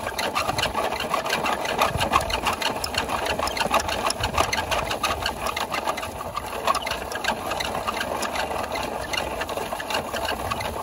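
Small motor and plastic gears of a toy garbage truck's rear packer running steadily, with a rapid clicking, as the packer draws grass and leaves out of the hopper.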